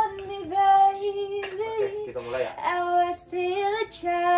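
A young woman singing, holding long steady notes, with a brief break in the line about two seconds in.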